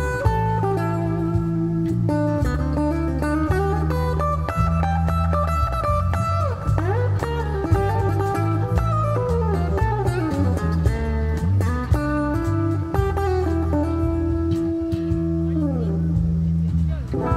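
Live instrumental rock played on electric guitar, with bass and cajon underneath. The lead guitar line has many string bends and slides through the middle, and it settles into one long held note near the end.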